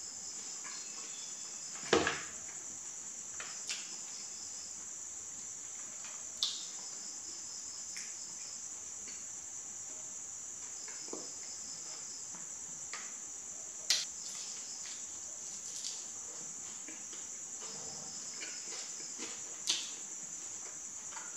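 Steady high chirring of crickets throughout, with a faint pulsing second insect call. Over it, a few sharp clicks and taps from food being handled on the plate, the loudest about two seconds in and near the end.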